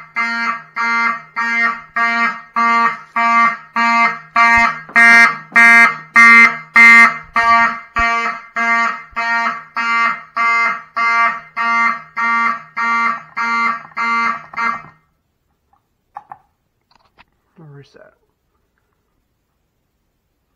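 Fire alarm horn strobes sounding a buzzy horn tone in even pulses of about two a second, in alarm after the heat detector was tripped. The horns cut off about 15 seconds in as the system is reset, followed by a few faint clicks.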